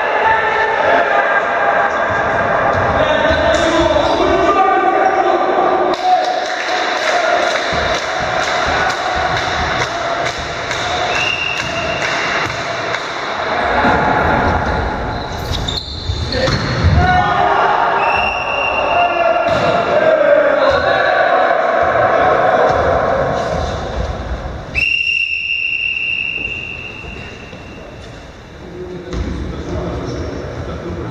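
Indoor volleyball play in a reverberant gym: players shouting and calling to each other over the thuds of ball hits and bounces. Near the end a long high whistle blast from the referee.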